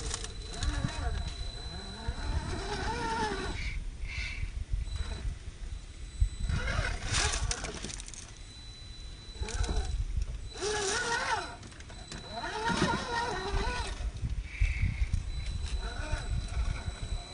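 The RC rock crawler's 540 brushed electric motor and geared drivetrain whining, its pitch rising and falling with the throttle in spells of a second or so as the truck climbs over rock. Low rumbling runs underneath.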